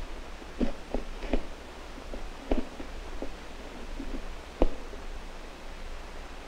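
A few soft clicks and knocks from a knife cutting a short piece of woody plant stem lengthwise on a wooden tabletop, the sharpest knock near the end. Under them runs the steady low hum and hiss of an old film soundtrack.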